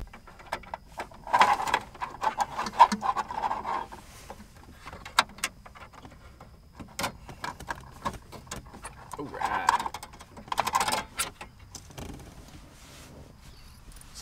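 Scattered sharp clicks and knocks of metal and plastic as a metal radio mounting sleeve is pushed and worked into the truck's plastic dash opening.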